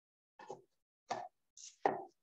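Four brief, sharp sounds in two seconds, the last the loudest, each cut off to dead silence, as a video call's noise suppression passes only bursts of sound.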